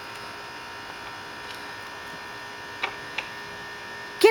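Steady electrical hum holding a few fixed tones, with two brief clicks about three seconds in.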